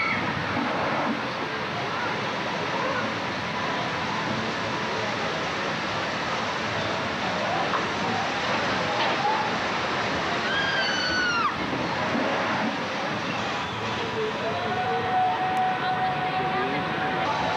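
Steady rush of water from a log flume ride and its waterfall, with people's voices over it and a high, falling cry about ten seconds in.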